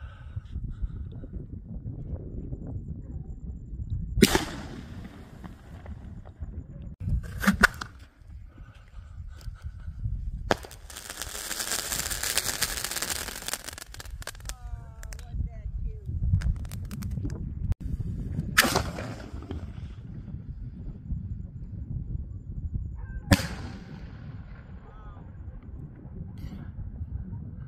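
Aerial fireworks bursting overhead: sharp bangs about four seconds in, a close pair near seven seconds, and one at ten and a half seconds followed by about three seconds of hissing crackle. Two more single bangs come near nineteen and twenty-three seconds, each trailing off in a short echo.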